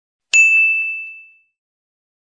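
A single bright ding of a notification-bell sound effect, marking the click on a subscribe button's bell. It starts about a third of a second in and rings away within about a second.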